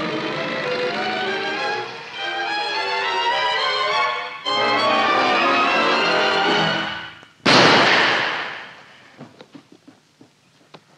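Orchestral film score with strings, which breaks off about seven seconds in and is followed by a sudden loud crash that dies away over about a second and a half, then a few faint clicks.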